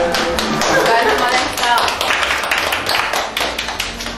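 A small group of people clapping their hands in many quick, sharp claps.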